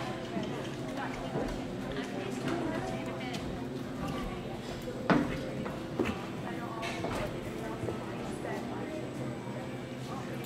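A horse's hoofbeats in the dirt footing of an indoor arena as it canters a jumping course, with a louder thud about halfway through around a fence.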